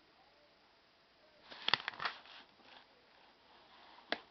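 Small plastic Lego pieces being handled: a short clatter of sharp clicks about a second and a half in, with a few faint ticks after.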